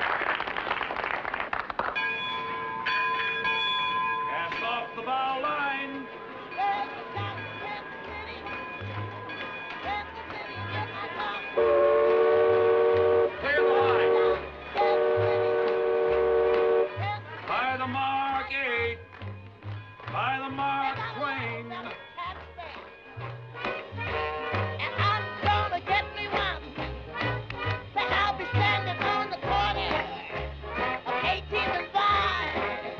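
Upbeat band music with a steady bass beat, broken about twelve seconds in by two long blasts of the Mark Twain riverboat's steam whistle, a held chord of several tones, which is the loudest sound here.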